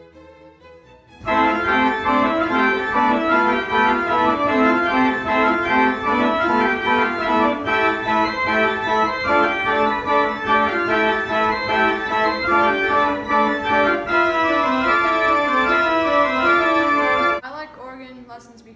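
Three-manual church organ playing a piece with several melodic lines moving at once. It comes in loudly about a second in and stops abruptly near the end.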